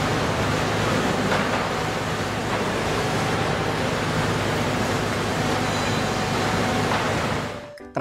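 Concrete mixer truck running: a steady diesel engine hum under an even rushing noise, fading in at the start and out just before the end.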